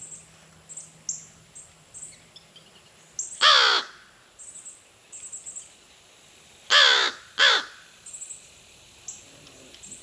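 Crow cawing three times: one caw about a third of the way in, then two quick caws in a row a few seconds later.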